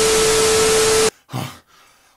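Loud burst of static-like hiss with a single steady hum tone running through it, cut off suddenly about a second in, then near quiet with only a faint brief low sound.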